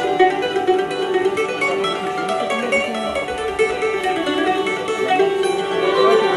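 An Algerian Andalusian music ensemble of ouds, mandolin and violins held upright on the knee plays a continuous melody, with the plucked strings to the fore.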